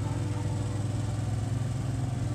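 Wacker Neuson ride-on tandem drum roller's engine running with a steady low hum as the roller drives along.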